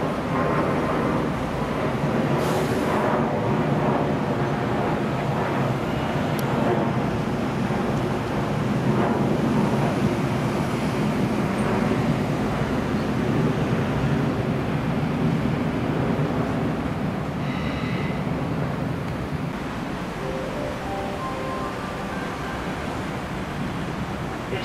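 Electric trains at a station platform: a steady low rumble of traction equipment and wheels, with a brief hiss about three seconds in.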